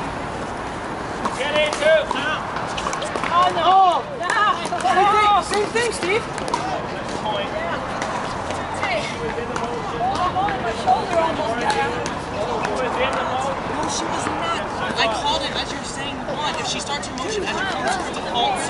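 Indistinct talk and chatter of several people, with a few light knocks mixed in.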